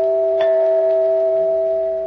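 A held musical chord of two main notes with bell-like attacks. It sounds steadily without dying away, with a second stroke adding higher notes about half a second in, and it fades near the end.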